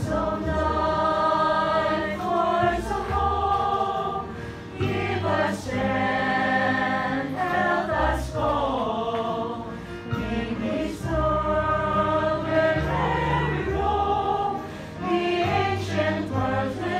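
Small mixed choir, mostly women's voices, singing a slow gospel hymn in harmony, with long held notes.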